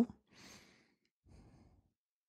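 Faint breathing from a man in the pause between question and answer: a soft breath about half a second in, and a fainter one a second later.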